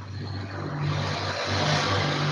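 Low engine drone with a rush of noise building about half a second in, as from a motor vehicle passing, picked up by a participant's open microphone on the video call.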